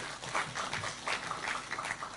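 Audience applauding, an uneven patter of many hand claps.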